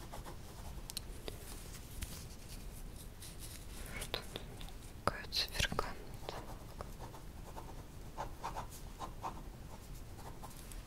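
Soft, close-up rustles and small taps of a cloth tape measure being handled next to the microphone, with quiet whispering.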